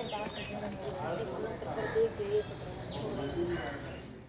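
Ambient outdoor sound with faint chatter of people in the background and birds chirping. Near the end comes a quick run of high, falling chirps, several a second.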